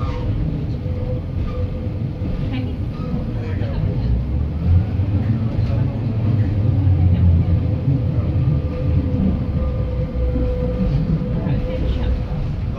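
Inside the saloon of a Class 142 Pacer diesel railbus: the steady low rumble of its underfloor diesel engine and running gear, with a steady mid-pitched hum, swelling louder around the middle.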